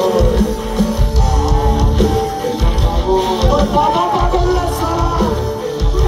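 Live rock band playing through a PA system, with electric guitars, drums and keyboard over a heavy bass, and a melody line bending in pitch.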